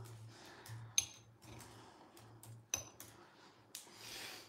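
A metal utensil clinking and scraping against a glass jar: a few light, separate clinks, the sharpest about a second in and again near the end.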